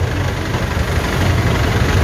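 A vehicle engine idling steadily, a continuous low rumble.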